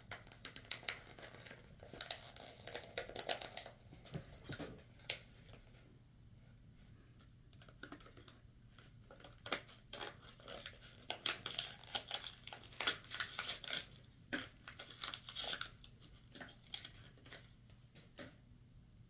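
Crinkling and rustling of shopping bags and wrapping being handled and pulled open, in bursts through the first five seconds and again from about nine to sixteen seconds, with a quieter stretch in between.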